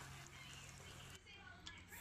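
Near silence: faint room tone with a low steady hum that stops a little past halfway.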